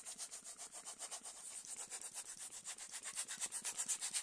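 Hand air pump worked in quick, even strokes, puffing air to blow dust out of a desktop computer's case: a faint rhythmic hiss of short puffs, several a second.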